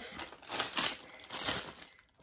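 Plastic snack packaging crinkling as it is handled: a bag of turkey pepperoni being opened and picked through, in a few rustling swells.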